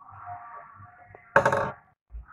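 A brief, loud handling noise about a second and a half in, from crepe paper and a wire or stick being worked by hand at the table.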